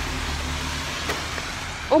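Steady rushing noise with a strong low rumble, loud and even, which startles a listener near the end.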